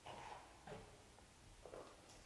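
Near silence in the cave, broken by a few faint, indistinct snatches of distant voices.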